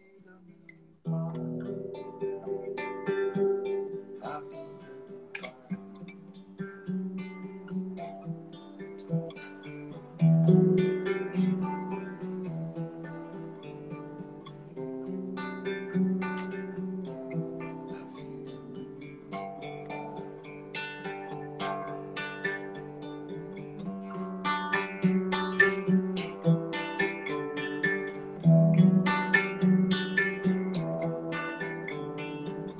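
Solo acoustic guitar playing an instrumental passage of plucked chords and single notes, with no singing. It swells louder about ten seconds in and again near the end.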